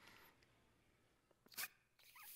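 Mostly near silence. About one and a half seconds in comes a single short puff of breath noise, a blast of air into a shofar (ram's horn) that does not sound a note.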